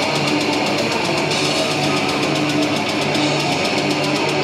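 Heavy metal band playing live at full volume: heavily distorted electric guitars chugging over a driving drum kit with crashing cymbals.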